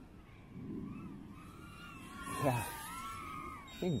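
Small brushless FPV whoop drone's propellers whining, the pitch rising and falling as the throttle changes. A short vocal sound about halfway through, and the start of speech at the end.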